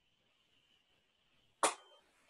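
A single sharp knock about one and a half seconds in, with a short ringing tail: communion ware being set down on a wooden table while the elements are arranged.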